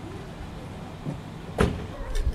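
Steady low background rumble with a soft knock about a second in and a sharp, louder knock about one and a half seconds in.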